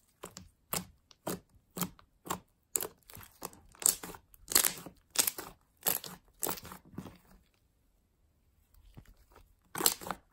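A large batch of fluffy slime being squished, poked and pulled apart by hand, making short sticky squishes about two a second. They stop for about a second and a half near the end, then start again louder.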